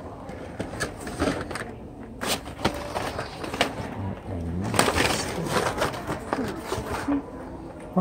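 Hot Wheels cars in plastic blister packs on cardboard cards being handled and shuffled on a store peg: a steady scatter of short plastic clicks, crackles and rustles.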